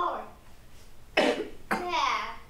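A child coughing twice, sharply, in the second half; a child's voice trails off at the start.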